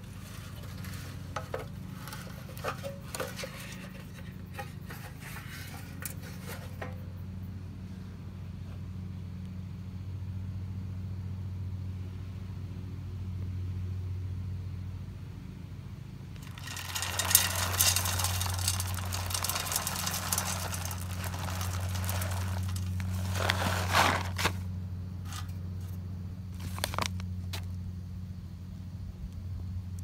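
Small metal clicks and scrapes of a BioLite camp stove being handled. About seventeen seconds in comes roughly three seconds of dense rattling as wood pellets are poured into its burn chamber, and a shorter rattle follows a few seconds later. A low steady hum runs underneath.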